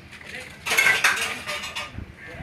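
A loud burst of clattering, hard things knocking and rattling quickly together, starting a little past halfway and lasting about a second.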